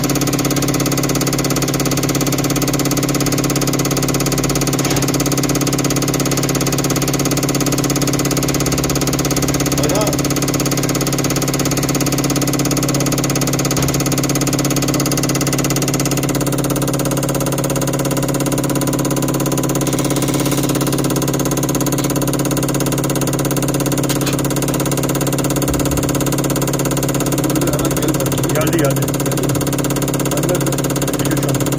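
Diesel injector test bench running steadily, its motor and high-pressure pump giving an even hum made of several held tones, while the injector is checked for leakage.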